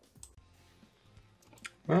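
Quiet room tone with a couple of faint, short clicks, then a man's voice starts near the end.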